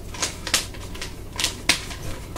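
Nunchaku being swung and caught, giving sharp clacks and smacks of wood against hand and body: four in two seconds at uneven intervals, the loudest near the end.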